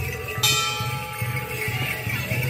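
Traditional Khmer procession music: held melodic tones over a repeating drum pulse, with a bright ringing metallic strike about half a second in.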